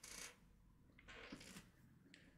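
Near silence: room tone, with two very faint brief rustles about a quarter second in and near the middle.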